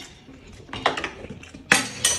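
A metal fork clinking and scraping against a plate in a few sharp strikes, the loudest near the end.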